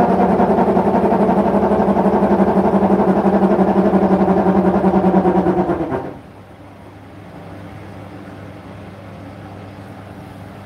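Hotpoint NSWR843C washing machine running mid-cycle: a loud, steady mechanical hum that stops suddenly about six seconds in, leaving a much quieter steady hum.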